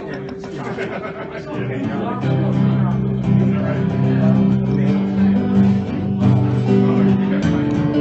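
Acoustic guitar strummed live, filling out and getting louder about two seconds in.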